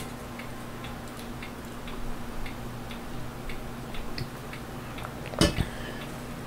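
Steady ticking, about two ticks a second, under a faint steady electrical hum. A single loud sharp knock comes near the end.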